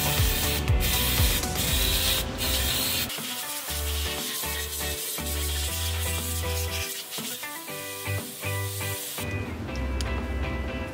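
Aerosol all-purpose cleaning spray hissing in several short bursts over the first three seconds or so, over background music that then carries on alone with a steady bass line.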